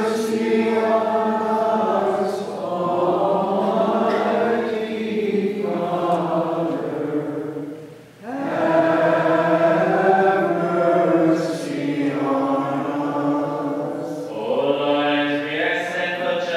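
Maronite liturgical chant sung by voices in sustained, melismatic lines, with a short break about halfway through.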